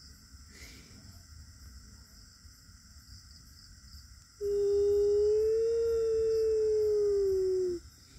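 A quiet stretch, then about halfway through a single long howl held at one steady pitch that sags slightly at the end and cuts off.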